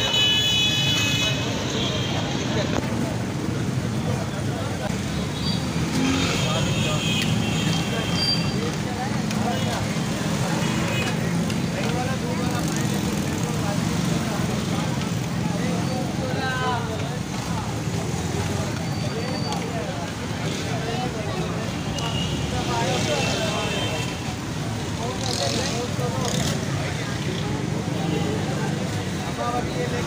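Busy street ambience: people talking in the background over steady traffic noise, with a vehicle horn sounding briefly near the start and a few more times later.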